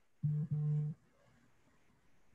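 A short, steady, low hum, like a man's voice humming "mm," lasting under a second with a brief break partway through.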